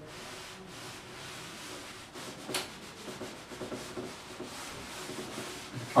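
A cloth rubbing across a chalkboard, wiping off chalk writing, with one brief louder swipe about two and a half seconds in.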